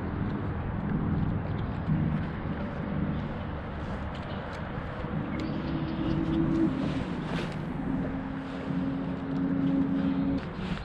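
Wind rumble on the microphone and water against a kayak hull, under a low steady hum that shifts to a higher pitch about five seconds in and settles on another pitch near the end, with a few faint clicks.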